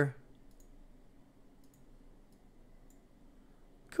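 A few faint, scattered clicks of a computer mouse, its wheel and buttons used to scroll and move around a map on screen.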